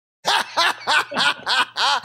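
A man laughing heartily in a quick run of about seven 'ha' pulses, roughly four a second, starting after a brief silence.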